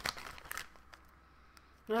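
A few soft crinkles and clicks of a clear plastic wax-melt clamshell being handled, mostly in the first half-second, then quiet; a voice says "Oh" at the very end.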